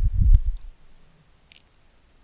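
A single computer mouse click over a low muffled bump in the first half second, then faint room noise.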